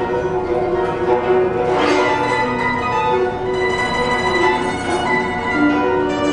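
Guzheng played solo: quick plucked notes ringing over one another, with a fast sweep across the strings about two seconds in.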